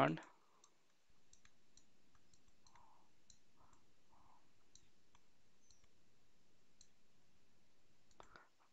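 Faint, scattered clicks of a stylus on a tablet screen while handwriting is written. A steady low hiss sets in about a second in.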